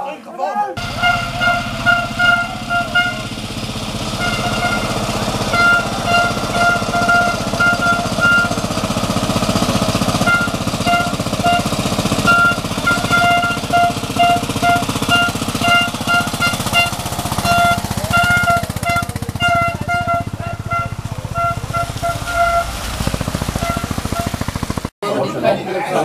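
An old tractor's engine running with a fast, steady pulse as it pulls a loaded wagon, with music playing over it. The sound cuts off suddenly near the end.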